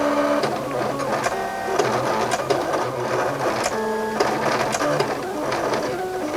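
Silhouette CAMEO craft cutter at work cutting a sheet of heat-press adhesive: its motors whir in short runs of changing pitch as the blade carriage and feed rollers move back and forth.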